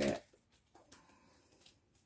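After a short spoken word, faint soft ticks and rustling of tarot cards being picked up and handled, a few light sounds in an otherwise quiet room.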